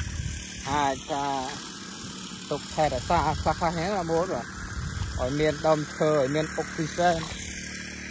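A man talking in short phrases with pauses, close to the microphone.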